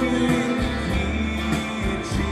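Live band music from a folk-rock song, with a strummed acoustic guitar and full band accompaniment playing between sung lines.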